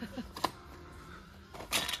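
Plastic DVD cases clicking and clattering against each other and a wire shopping cart as they are handled and flipped through, with a sharp click just before the middle and a short rustling burst near the end.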